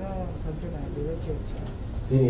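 A man's voice through a handheld microphone, a quieter, drawn-out stretch between louder spoken phrases.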